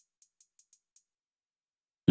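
Near silence with about six faint, short, high-pitched ticks in the first second: hi-hat samples auditioned quietly in FL Studio's sample browser.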